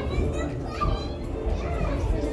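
Children's voices and indistinct chatter over background music.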